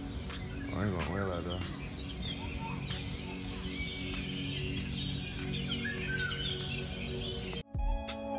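Many short bird chirps and tweets, which a passer-by takes for recorded bird sounds played through speakers in the landscaping rather than real birds, over a steady low background of music. The sound cuts out abruptly just before the end.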